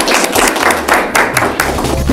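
A classroom audience applauding, many hands clapping in a dense, uneven patter. A low bass note of music comes in near the end.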